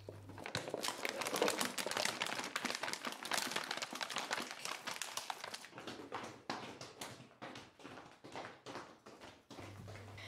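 Dense, irregular crackling and rustling made of many small clicks, thinning out over the last few seconds.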